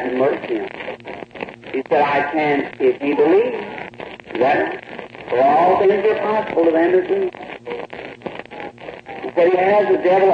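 Only speech: a man preaching, on an old recording that sounds thin and radio-like.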